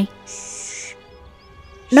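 A man hushing with one short 'shh' lasting under a second, over steady background music.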